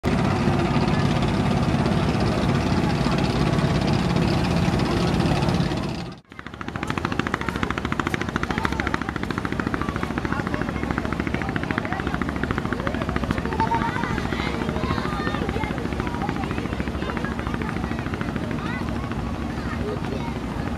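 Single-engine river trawler's engine running at a rapid, even chugging beat as the boat is under way. The sound drops out briefly about six seconds in.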